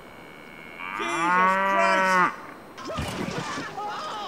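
A cow mooing: one long, loud moo beginning about a second in and lasting just over a second.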